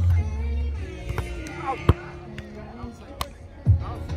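Background music with voices, and two sharp slaps about two and three seconds in: hands hitting a volleyball during a rally.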